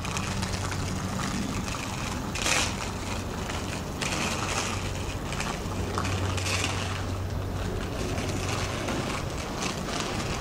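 Inline skate wheels rolling on an asphalt road, a steady rolling rumble with a louder swish about every two seconds as the skating strides push off.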